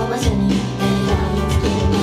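Loud J-pop idol song played live over a PA: a woman singing into a microphone over a guitar-driven backing with a steady beat.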